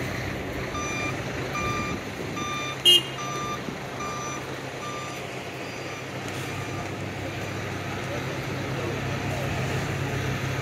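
Reversing alarm of a tour coach giving about seven short, evenly spaced beeps, a little more than one a second, that stop about five seconds in. A brief sharp click about three seconds in is the loudest sound, over a steady low hum.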